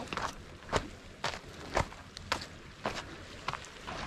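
Footsteps on a pebble beach, stones crunching underfoot about twice a second.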